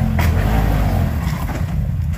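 A side-by-side UTV's engine running as the machine tips over onto its side, with one sharp knock just after the start as it goes over.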